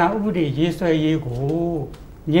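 Only speech: a man talking in Burmese.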